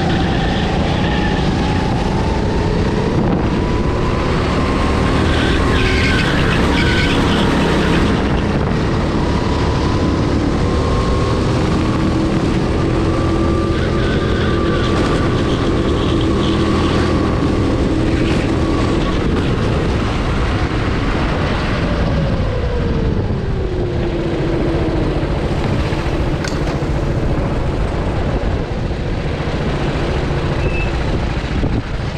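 Kart engine heard onboard, running steadily with its pitch slowly rising and easing off, then dropping in revs about three-quarters of the way through as the kart slows to roll into the pits.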